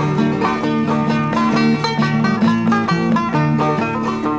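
Five-string banjo and acoustic guitar playing an instrumental break between verses of a bawdy folk song, with quick plucked banjo notes over strummed guitar and no singing.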